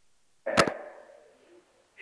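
A single short, sharp snap about half a second in, fading within half a second; the rest is silence.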